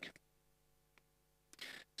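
Near silence: faint room tone with a steady low hum, one faint click about halfway through, and a short soft breath-like sound near the end.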